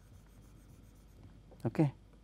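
Faint scratching of a stylus on a pen tablet, quick back-and-forth shading strokes, followed near the end by a man saying "Okay".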